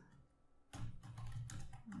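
Computer keyboard typing: a quick run of keystrokes starting about three-quarters of a second in, after a brief near-silence.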